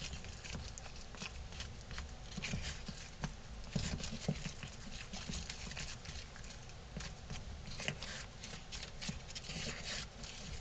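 Small tool scraping and tapping inside a plastic tub of wood filler, a steady run of irregular soft clicks and scrapes as the filler is scooped and stirred.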